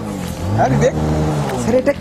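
A man's drawn-out wordless vocal sound, a long vowel that rises and then falls in pitch over about a second and a half.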